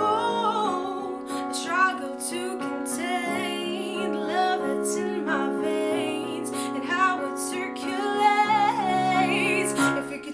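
A woman singing a slow, wavering vocal line with vibrato over sustained chords played on an electronic keyboard.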